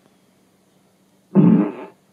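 Amazon Echo smart speaker playing a short fart sound effect, about half a second long, in answer to a request for a fart.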